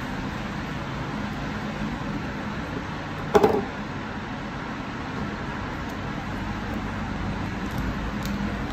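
Steady low background noise, with one short sharp knock a little over three seconds in as the phone's battery pack is set down on a wooden table. The knock is the loudest sound.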